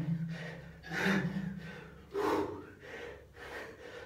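A man's forceful, voiced exhalations while shadowboxing: sharp hissing grunts about once a second, three loud ones and then two fainter ones near the end.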